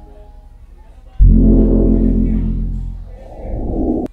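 Logo-intro music sting: fading mallet notes give way, about a second in, to a sudden loud deep bass hit with a sustained low chord that slowly dies away, followed by a rising whoosh near the end.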